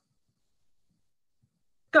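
Near silence, then a woman's voice calls out "Go" at the very end.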